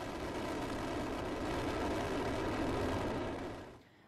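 Rocket engines at liftoff: a steady rushing rumble that fades away just before the end.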